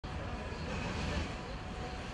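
Steady outdoor city street noise with a low rumble underneath.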